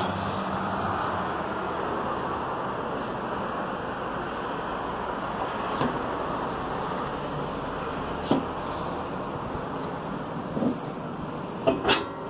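Steady, even rush of street traffic heard from high up in an open bell tower, with a few light knocks and sharper knocks near the end.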